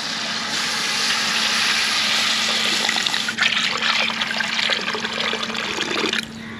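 Water poured from a steel bowl in a steady stream into a wide metal kadai of simmering masala, splashing into the liquid as the cooking water for the rice is added. The pouring turns splashier and more uneven about three seconds in.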